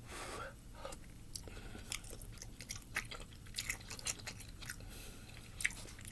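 A person chewing a mouthful of noodles and hot dog, heard as soft, irregular small clicks of the mouth, a few of them louder.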